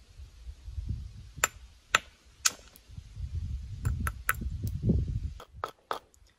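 A scatter of light, sharp clicks and taps as a limestone rock and a deer-antler billet are handled and set in position, over a low rumble on the microphone.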